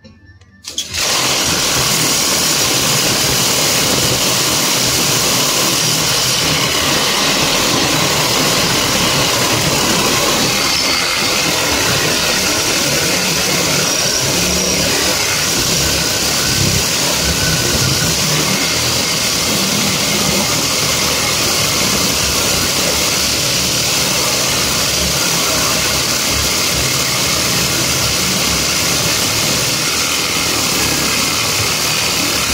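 Cordless reciprocating saw starting about a second in and running steadily, its blade sawing through a roll of steel welded grid wire.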